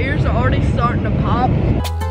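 Steady rushing jet-airliner cabin noise in flight, loud on the microphone, with a boy's voice calling out in three short rising-and-falling sounds without clear words.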